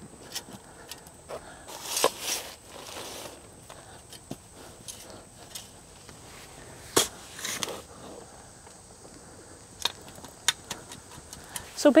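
A metal shovel digging into and turning soil and cow manure in a planting hole, giving irregular scrapes and knocks; the sharpest comes about seven seconds in.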